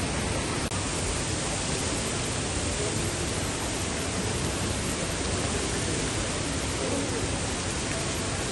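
Steady, even hiss of a shopping-centre atrium's background noise, with a brief dropout under a second in.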